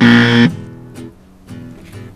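Guitar music: a loud strummed chord that rings out and fades over about half a second, then plays on quietly.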